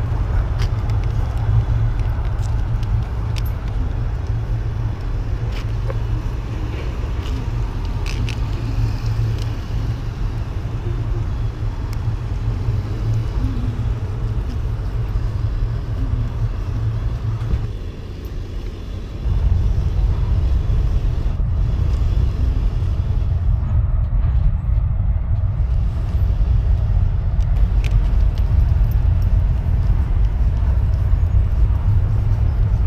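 Steady low rumble and hum of a slowly moving vehicle rolling over asphalt. It drops away briefly about two-thirds of the way through, then comes back louder.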